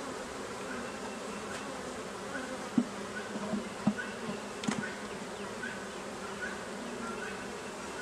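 A steady hum of many honeybees buzzing around an open hive. A few light knocks come about three to five seconds in as wooden hive frames are handled.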